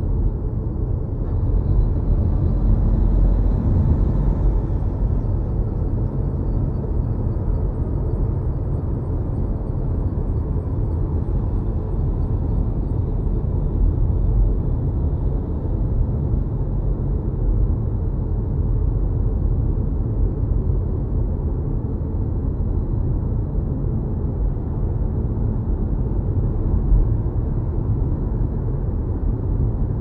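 Steady low road and tyre rumble heard inside an electric car's cabin while it cruises along a highway, with a brief swell of hiss a few seconds in.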